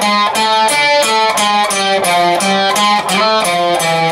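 Electric guitar picked in a run of single notes, about four a second, playing a riff.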